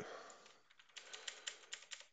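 Computer keyboard keys clicking faintly, a quick run of taps starting about a second in, after a short hiss at the start.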